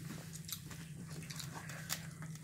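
People chewing and crunching crisp tortilla chips close to the microphone: a scatter of small, sharp crackles over a steady low hum.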